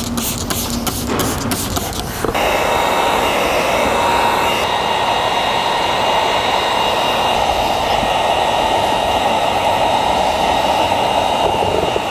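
A hand trigger spray bottle squirts several times in quick succession. About two seconds in, a heat gun switches on and runs steadily, its blower giving a loud, even rush of air with a faint whine.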